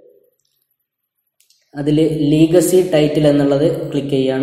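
A pause of about a second and a half, with one or two faint clicks near its end, then a man's narrating voice starting about two seconds in and continuing.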